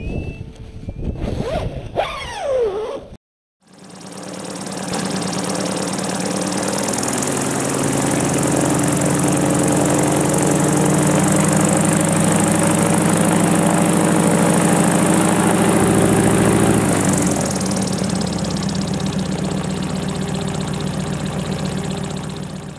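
Wind machine running: a motor's steady hum under the rush of a large fan. It builds up over a few seconds, holds steady, and winds down somewhat near the end.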